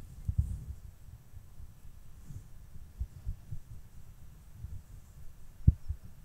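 Soft, dull low thumps and bumps, with two sharper knocks, one at the start and one just before the end.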